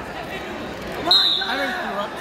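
Spectators' voices in a gymnasium during a wrestling bout, with one sudden sharp, brief high-pitched sound about halfway through.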